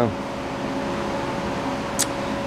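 Steady mechanical hum with a constant tone, like a fan or similar running machine in the room. A single sharp click comes near the end.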